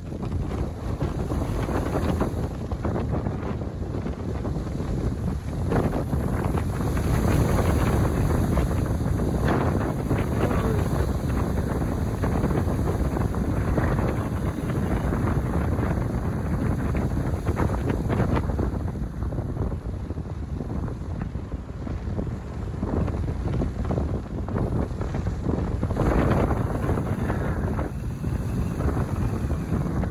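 Wind from an EF2 tornado buffeting the microphone: a loud, steady, dense low rumble of wind noise.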